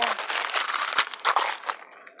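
Paper wrapping being torn and crumpled off a small book, a dense crackling that dies away near the end.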